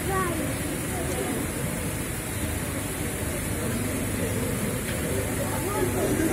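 Indistinct chatter of people's voices over a steady background noise, with no clear words.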